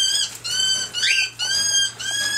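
Cockatiel calling: a quick run of about four short, clear chirps at an even pitch, one every half second.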